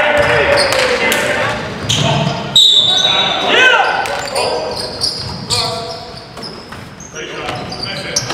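Basketball game in a gym: the ball bouncing and hitting the floor, sneakers squeaking on the hardwood and players' voices calling out, all echoing in the hall.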